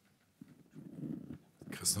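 A faint low murmur of voices, then a reporter starts speaking into a microphone near the end.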